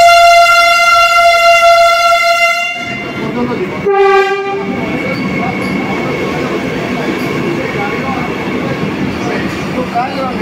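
Vande Bharat Express trainset's horn sounding a long blast of about three seconds, then a second, shorter blast at a lower pitch about four seconds in. After that the trainset rolls slowly past the platform with a steady rumble and a faint high whine.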